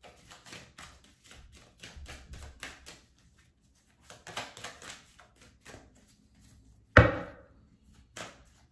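A deck of tarot cards being shuffled by hand: a quick run of crisp card flicks, pausing for about a second and then starting again, followed by a single loud slap about seven seconds in.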